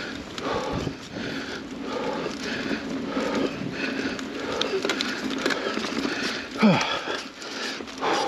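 Mountain bike ridden over dirt singletrack: the rider breathes hard and rhythmically, about twice a second, over steady rattle and trail noise from the bike. Near the end comes a short, louder vocal sound that falls in pitch.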